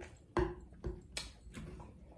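Close-miked eating sounds of salmon and broccoli, heard as about five short, soft clicks and taps.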